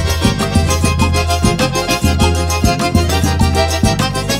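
Instrumental forró music: an accordion playing the melody over a steady bass beat and regular percussion strokes.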